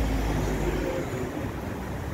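Street background noise: a low rumble that eases after about a second, with faint voices in the background.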